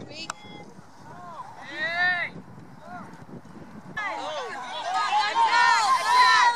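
Players and spectators at a youth soccer game shouting across the field, with one sharp knock about a third of a second in. Separate calls come around the middle, then a louder mass of overlapping shouts fills the last two seconds.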